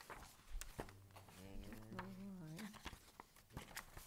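Quiet room with a few soft, scattered knocks and taps, and a faint murmured voice in the middle.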